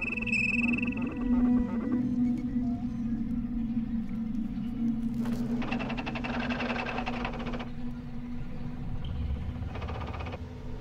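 Electronic sci-fi title-screen sound design. A steady low drone hum runs throughout. A high beep at the start falls slightly in pitch. About five seconds in, a burst of rapid crackling static with warbling tones lasts roughly two seconds.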